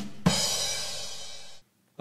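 Drum kit joke sting: a drum and cymbal hit about a quarter second in, the cymbal ringing and fading, then cut off sharply about a second and a half in.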